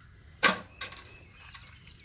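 A small wire-mesh suet cage set down with one sharp metallic clink about half a second in, followed by a couple of faint handling clicks.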